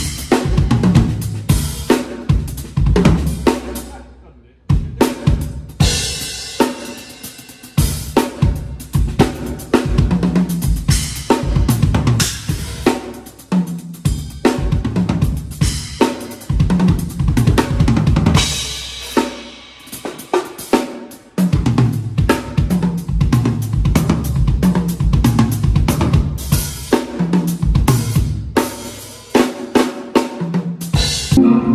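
Acoustic drum kit played hard: busy snare, bass drum and hi-hat grooves and fills, punctuated by ringing cymbal crashes. The playing stops briefly just after four seconds, then picks up again.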